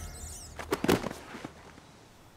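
A few short, soft knocks, two close together just under a second in and another about half a second later, as a burst of music dies away.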